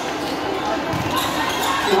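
Noise of a basketball game in a large, echoing gym: many voices from the crowd, with a few sharp thuds of a basketball bouncing on the court. Near the end the crowd starts counting aloud.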